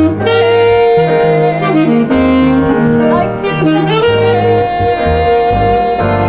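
Tenor saxophone playing a flowing melodic jazz line over plucked upright bass and piano chords.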